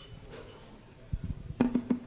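A few soft knocks a little after a second in, then a short low pitched sound near the end, against quiet room background.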